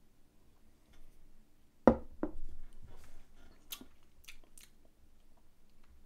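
A tall beer glass set down on a table with a sharp knock about two seconds in, a softer knock just after. Then a few quiet clicks and smacks of the lips and mouth as the beer is tasted.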